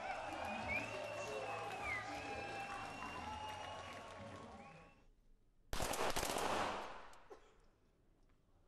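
Crowd cheering and voices, then after a brief quiet gap a sudden cluster of .22 target-pistol shots fired within about a second, echoing in the range hall.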